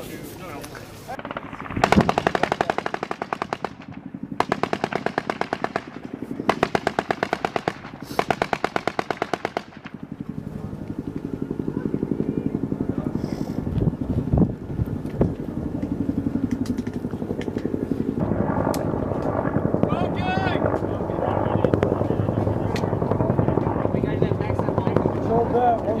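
Automatic gunfire: four long bursts of machine-gun fire in quick succession over the first half, followed by a couple of single shots.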